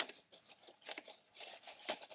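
Card and paper plate crinkling and rustling faintly as a stapled card band is pushed and adjusted inside a paper plate hat, with a few light clicks.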